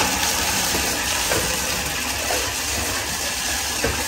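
Bathtub faucet running: water pours steadily from the spout and splashes into the empty tub.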